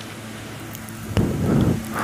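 Low background with a faint steady hum. About a second in, a click, then a brief rush of wind noise on the microphone.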